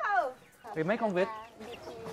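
A woman calling chickens and ducks to feed: a high "woo hoo" call that falls away just after the start, then a quick run of "cúc cúc cúc" calls about a second in.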